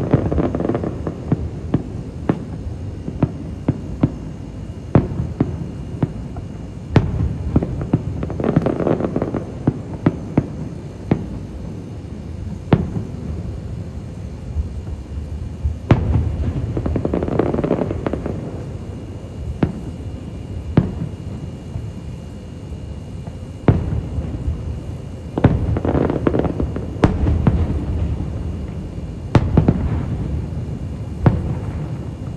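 Aerial firework shells bursting: a steady run of sharp bangs and booms, with spells of dense crackling about a second in, around nine seconds, around seventeen seconds and again around twenty-six seconds.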